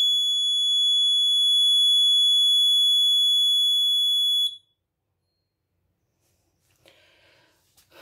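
Piezo buzzer alarm on an Arduino greenhouse controller sounding one steady, loud, high-pitched tone that cuts off suddenly about four and a half seconds in. It is the controller's humidity alarm, set to sound at 45% humidity and above.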